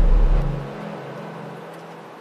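Electronic music: a low synth drone over deep bass with held tones. About half a second in the bass cuts off and the rest fades away.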